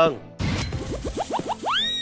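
A cartoon-style sound effect: a quick run of short rising 'boing' sweeps, each climbing a little higher. It ends in a longer rising whistle-like tone that holds near the end.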